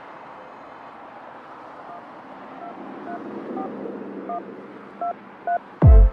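Phone keypad dialing tones: about seven short two-note beeps, roughly two a second, over a steady hum of city traffic. A heavy electronic kick drum comes in just before the end.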